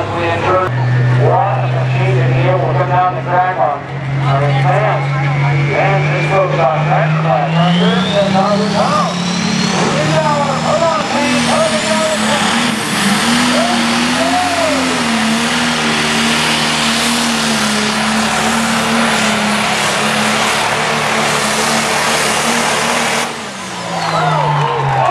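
Pro Stock pulling tractor's turbocharged diesel engine in a modified John Deere, revving up and pulling hard under load. The turbocharger's whine climbs steeply in pitch as it spools, then the engine holds a high, steady run before cutting off sharply near the end. An announcer talks over the PA through the first several seconds.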